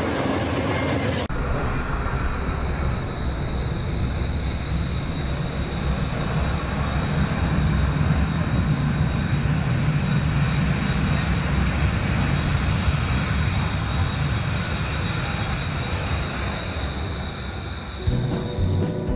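Amtrak Empire Builder passenger train rolling past close by: a steady rumble of the cars running over the track. It swells to its loudest about halfway through and eases off a little near the end.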